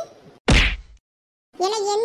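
A single cartoon whack sound effect about half a second in: one short, sharp hit with a heavy low thud under it.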